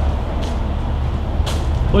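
Pickup truck engine idling: a steady low rumble, with two faint clicks about a second apart.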